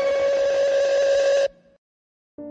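A violin holding one long, steady note that cuts off suddenly about one and a half seconds in.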